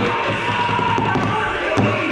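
Music playing over a noisy crowd and voices, with the light taps of wooden drumsticks on a rubber practice pad.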